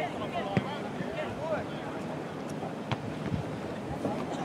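Distant shouts and calls of players across an open soccer field, over a steady outdoor haze, with a sharp knock about half a second in and another about three seconds in.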